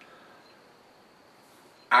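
Faint room tone, a low steady hiss with no distinct event; a man's voice starts again right at the end.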